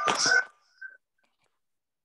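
A breathy, half-whispered voice over a video call that trails off about half a second in, followed by a brief faint sound and then dead silence.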